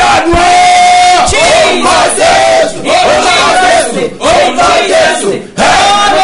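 A man shouting fervent prayer at full voice, with other voices crying out with him, broken by short breaths a little after 4 s and near 5.5 s.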